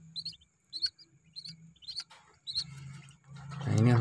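Newly hatched Muscovy ducklings peeping: short, high chirps repeating about twice a second.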